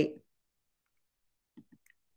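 The last syllable of a spoken word, then quiet room tone with two or three short faint clicks near the end, from a computer mouse as a screen share is stopped and restarted.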